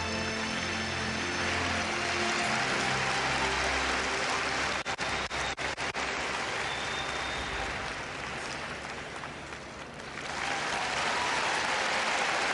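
Orchestral skating-program music draws to its close in the first few seconds as a large arena crowd's applause builds and takes over. The applause has a few abrupt brief dropouts about five seconds in, eases off, then swells again near the end.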